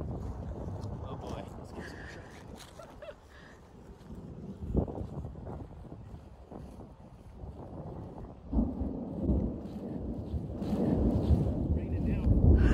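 Gusty wind from an approaching thunderstorm buffeting the microphone, with a sharp gust about halfway through and the buffeting growing louder over the last few seconds.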